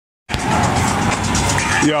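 A brief dead silence at an edit, then loud, steady street noise with traffic, picked up on a phone microphone. A man's voice starts near the end.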